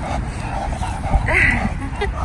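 English bulldog giving one short, high yip about a second and a half in, over a steady low rumble of wind on the microphone.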